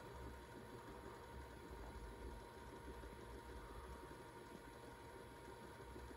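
Near silence: faint steady hiss of room tone with a low, uneven rumble and a thin faint steady tone.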